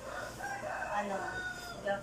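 A long, drawn-out animal call lasting most of the two seconds, with a woman's single spoken word over it.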